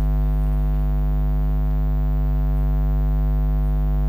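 Steady electrical mains hum in the recording, a low buzz with a ladder of higher overtones, unchanging throughout.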